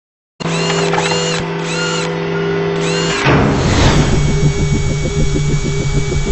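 Intro sound effects for an animated logo: a steady buzzing drone with repeated chirping sweeps, then a whoosh about three seconds in that leads into a fast pulsing rhythm.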